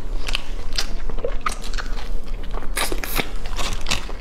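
Close-up eating sounds of roast chicken: chewing and biting with sharp wet clicks and crunches at irregular intervals. Near the end the aluminium foil under the chicken crinkles as the bird is pulled apart.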